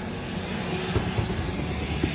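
Aircraft engines running on an airport apron: a steady rushing noise with a low hum beneath it.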